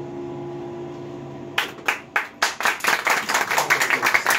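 The last acoustic guitar chord rings and fades, then a small audience starts clapping about one and a half seconds in: a few separate claps at first, quickly filling into steady applause.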